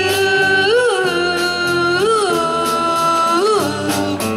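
Live band playing a slow country-pop song: a long held melody note swells up in pitch and back about three times over a steady backing of bass and drums.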